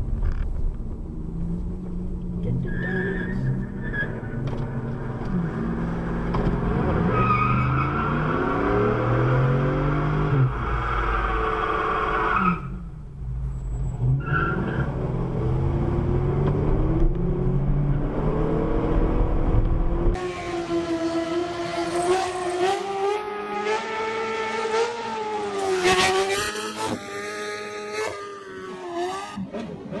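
Car engine revving up and down hard during a burnout, with the spinning tyres squealing. About two-thirds of the way in, the sound cuts to another car's engine revving with tyre squeal.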